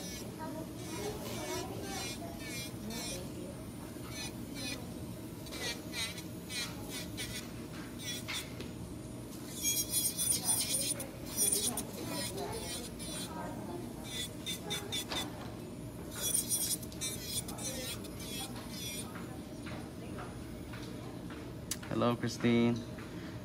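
Electric nail drill (e-file) running steadily as its bit works the cuticle area of a dip-powder nail, with short scraping and clicking contacts throughout. Voices are in the background.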